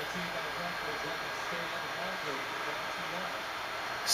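Steady room noise: an even hiss with faint low hum-like tones coming and going.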